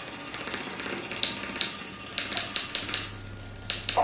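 Improvised music for percussion and live electronics: sharp, irregular clicks and ticks, a tight run of about five in the middle and two more near the end, with a low steady hum coming in during the second half.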